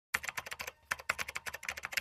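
Keyboard typing sound effect: a rapid run of keystroke clicks with a short break a little under a second in.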